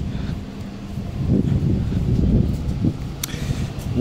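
Low, steady rumble of city street traffic, with wind on the microphone.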